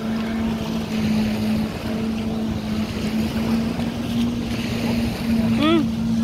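A personal watercraft's engine runs steadily, driving a flyboard's water jet: a constant drone over wind and surf noise.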